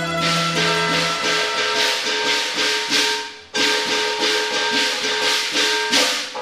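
Cantonese opera instrumental ensemble playing an introduction: held bowed-string notes under a fast, bright, rattling percussion layer. The music breaks off briefly about three and a half seconds in, then resumes.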